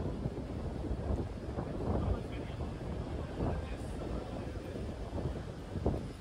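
Busy pedestrian street ambience: passers-by talking, with wind rumbling on the phone's microphone.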